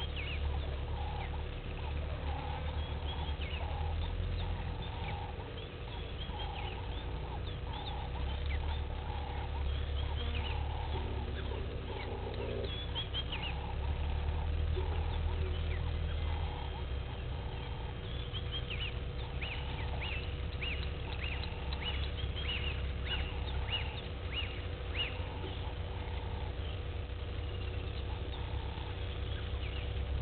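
Outdoor bush ambience: several birds calling with short, quick descending chirps, over a lower call repeated about once a second and a steady low rumble.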